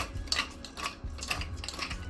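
A large hand-twisted pepper mill grinding black peppercorns, its grinding mechanism ratcheting in a series of short repeated turns.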